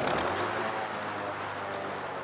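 Single-engine light aircraft's piston engine running steadily, its propeller turning.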